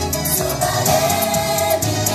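Japanese idol-group pop song: girls singing into microphones over a backing track with a steady beat, played through stage PA speakers.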